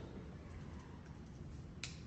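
Quiet room tone with a single sharp click near the end.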